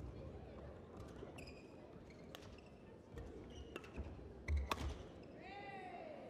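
Badminton rally on an indoor court: sharp racket strikes on the shuttlecock, short squeaks of sneakers on the court floor and footfalls, loudest in a cluster of thuds about four and a half seconds in. Near the end comes a short high cry that rises and falls in pitch, a player's shout as the rally ends.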